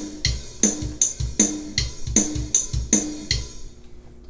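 EZdrummer software drum track playing back: kick, snare and cymbals in a steady beat, stopping about three and a half seconds in.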